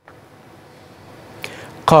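Faint steady hiss of studio room noise with one short click about a second and a half in, then a male news anchor starts speaking in Arabic near the end.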